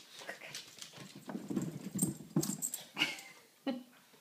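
A pug on carpeted stairs: a run of irregular soft thumps and short dog noises for about three seconds, then one brief sound near the end.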